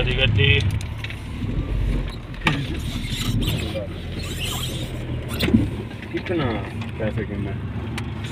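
Car engine and road noise heard from inside the cabin as the car drives along, a steady low rumble, with voices talking at times and a few light clicks.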